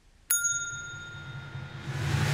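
A single bright bell-like ding, struck once about a third of a second in and ringing out over about a second and a half, with a low hum beneath it.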